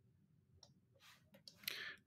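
Near silence with a few faint, scattered clicks.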